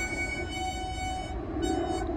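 Harmonica music playing held chords, with a chord change about one and a half seconds in, over a low rumble.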